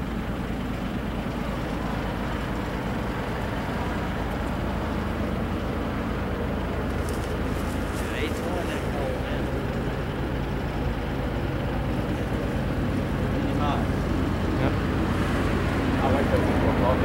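GE ES44AH diesel locomotive leading a freight train and approaching under power: a steady low engine drone that slowly grows louder as the train nears.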